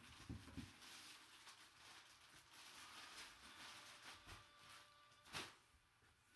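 Faint rustling and crinkling of packing paper and a fabric bag being handled in a cardboard box, with a louder rustle about five seconds in.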